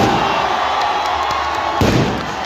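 Large festival crowd shouting and cheering around a chariot, with a sharp thump near the end.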